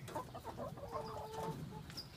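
A small flock of backyard chickens clucking softly: a few short calls and one longer, drawn-out call about a second in.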